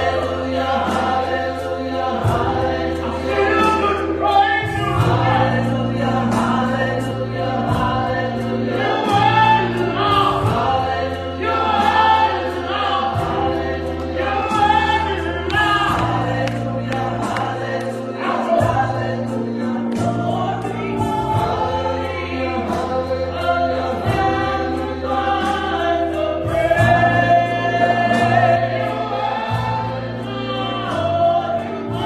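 Gospel choir singing through microphones, with keyboard accompaniment and sustained low bass notes under the voices.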